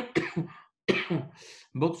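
A man clearing his throat: a short rough burst about a second in that trails off into a breathy hiss.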